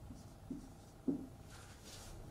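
Marker pen writing on a whiteboard, faint: two short taps about half a second and a second in, then a soft stroke near the end.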